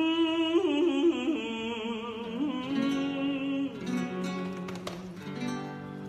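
A man singing long held, wavering notes to a nylon-string acoustic guitar; the voice drops out after about three and a half seconds, leaving the guitar playing lower notes.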